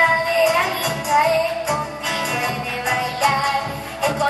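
A young girl singing a folk song over two strummed acoustic guitars.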